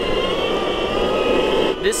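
Electric skateboard (Boosted Board) riding along: a steady motor whine of several held tones over the rumble of its wheels rolling on pavement.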